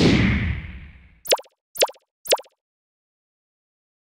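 Animated end-card sound effects: a whoosh with a low rumble that fades over about a second, then three short pops about half a second apart, one as each line of text pops onto the screen.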